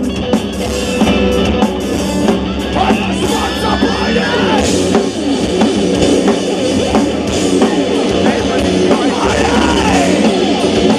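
Heavy metal band playing live and loud: distorted electric guitars and a drum kit, with a singer over them.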